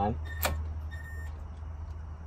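Steady low background hum in a garage, with one sharp metallic click about half a second in as a socket and extension are seated on a strut bolt.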